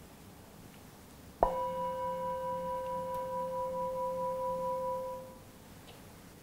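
Metal singing bowl struck once with a mallet about a second and a half in, ringing with a slight waver for about four seconds before fading away. The strike marks the start of a one-minute meditation period.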